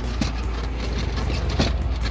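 Scissor jack and tools in the spare-tyre well being shaken by hand to find a rattle, giving a light knock just after the start and a sharper one about one and a half seconds in, over a steady low rumble.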